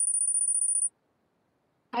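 A short, high-pitched electronic ringing tone with a rapid flutter, lasting just under a second, from the Kahoot quiz game as its scoreboard comes up.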